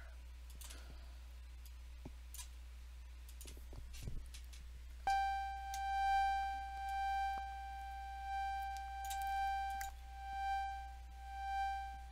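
A sustained synthesizer organ note from Bitwig Studio's Organ device, starting about halfway through after a few faint clicks. Its level swells and fades in a slow, regular cycle as an LFO modulates it.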